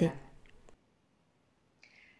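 A woman's voice-over pauses between sentences: her last word trails off, then come two faint mouth clicks and near silence, and a soft intake of breath near the end.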